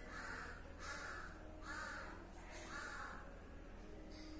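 A bird calling four times in a row, each call about half a second long and a little under a second apart.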